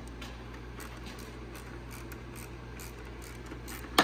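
Faint light clicking, a few clicks a second, from a hand wrench turning the chain-tensioner adjuster bolt on a snowmobile chain case, over a steady low hum, with one sharper click at the end.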